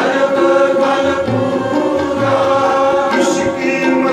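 Sikh kirtan: a male lead voice sings a long held note over sustained drone-like accompaniment and a few soft tabla strokes.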